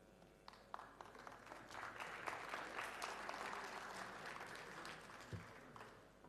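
Audience applause: a few scattered claps at first, building to steady clapping and then dying away near the end. A brief low thump sounds shortly before the clapping ends.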